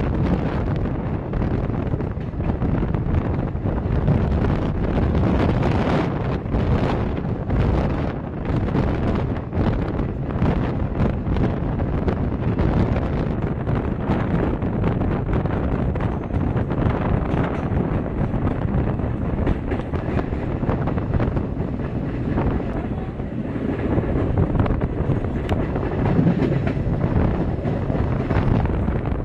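Wind buffeting the microphone over the steady rumble and irregular clatter of a moving passenger train's wheels on the rails, heard from an open coach door.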